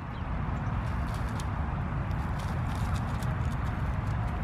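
Footfalls crunching on wood-chip mulch, with faint scattered clicks over a steady low rumble and hiss.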